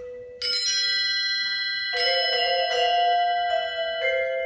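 Percussion ensemble playing tuned mallet instruments. A bright, bell-like metal strike comes about half a second in and rings on with high overtones, and a second struck chord with lower ringing tones follows about two seconds in.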